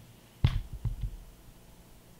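A dull thump about half a second in, then two lighter knocks within the next half second: handling noise of hands on the phone and the wooden tabletop.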